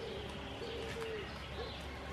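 A dove cooing in a run of low, curving notes, with faint small-bird chirps behind it.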